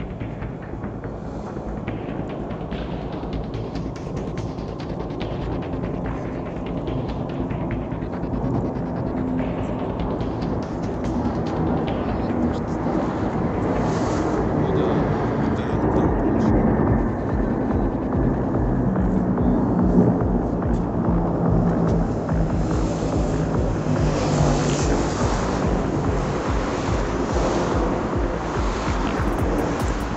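Formation of military jet aircraft flying over, a low rumbling engine noise that builds steadily over the first half and then stays loud.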